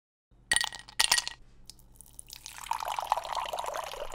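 Two sharp glassy clinks about half a second apart, then whiskey poured from a bottle into a glass, a fluttering gurgle lasting about two seconds.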